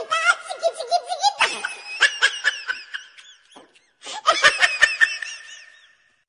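A baby laughing in quick, high-pitched bursts of giggles and squealing belly laughs. The laughter comes in separate takes, with a short pause past the middle before a last burst fades out.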